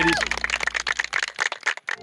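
A small group clapping: quick, irregular hand claps that thin out and die away near the end.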